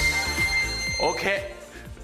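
Electronic dance music with a beat of about two kick-drum thumps a second, over which a long high beep sounds for about a second as the exercise timer's countdown reaches zero. A brief voice comes in near the middle and the music then drops in level.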